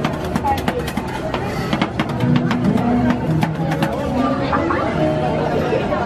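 Background music and voices, with metal spatulas repeatedly clicking and scraping on the steel cold plate of a rolled-ice-cream stand as the base is chopped and spread.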